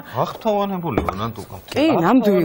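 Knife chopping vegetables on a cutting board, under a person talking.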